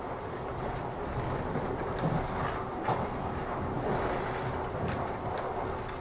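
Cabin noise of the Kirakira Uetsu, a 485-series electric train, running at speed: a steady rumble of wheels on rail with a few sharp clicks, swelling slightly in the middle as it runs through a station.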